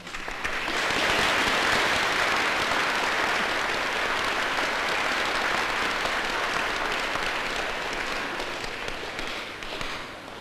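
Audience applauding, swelling over the first second and then slowly fading, cut off near the end.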